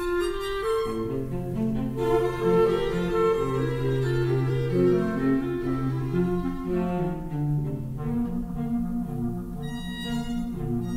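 Live classical chamber trio of violin, B-flat clarinet and cello playing; the cello holds long low notes through the first half beneath the moving upper parts.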